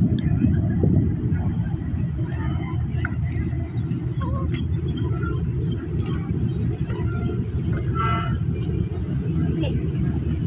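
Harbour ambience: a steady low rumble, with faint distant voices and a few light knocks over it.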